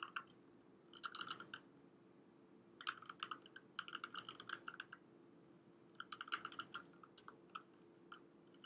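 Faint computer keyboard typing in bursts of quick keystrokes with pauses between: a short burst about a second in, a longer run from about three to five seconds, and another around six to seven and a half seconds.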